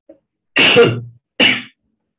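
A man coughing twice, a longer, louder cough about half a second in followed by a shorter one.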